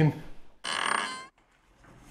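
A door hinge squeaking as the door swings: one steady, high creak of about half a second, starting just over half a second in.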